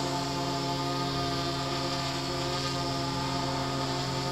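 DJI Phantom 3 Professional quadcopter hovering and slowly turning on the spot, its four motors and propellers giving a steady buzzing hum with several even tones.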